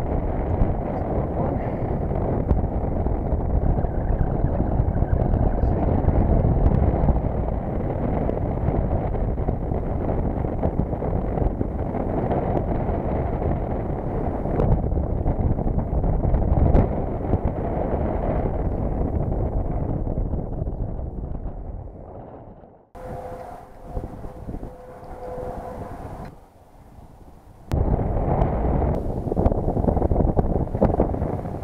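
Wind buffeting a head-mounted camera's microphone: a steady low rumble that dies away about twenty seconds in. A quieter stretch with a faint steady hum follows, and the wind noise comes back a couple of seconds before the end.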